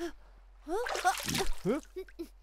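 Cartoon characters' short wordless vocal cries, several in quick succession, with one rising in pitch near the end.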